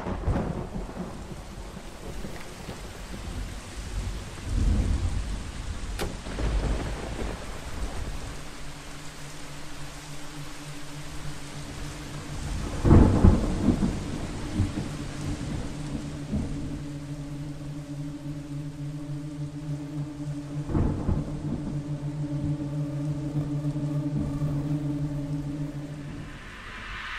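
Steady rain with repeated rolls of thunder, the loudest about halfway through. From about a third of the way in, a low drone note is held beneath it.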